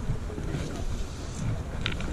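Coats rustling as they are pushed into a woven plastic IKEA bag, with wind rumbling on the microphone and a couple of short clicks near the end.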